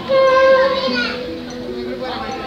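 Female voice holding a long sung note over two acoustic guitars; the note wavers and fades about a second in, leaving the guitars playing the closing chords.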